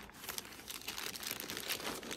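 Clear plastic packaging crinkling as hands handle a chain strap inside it, a quick run of small crackles.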